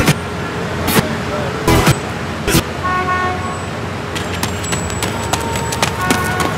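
City street ambience: a steady run of traffic noise with a brief car-horn toot about three seconds in, a few sharp knocks in the first seconds, and indistinct voices.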